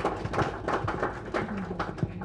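Scattered hand clapping from a small group of people, a quick irregular run of sharp claps.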